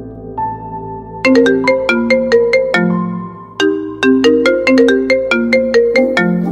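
Smartphone ringtone: a loud, quick melody of short struck notes that begins about a second in and repeats, following a second of soft sustained background music.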